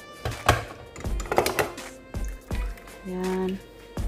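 Background music with a steady low beat and a held note about three seconds in.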